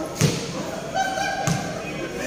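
Basketball bouncing on a hard court floor: two thuds about a second and a quarter apart.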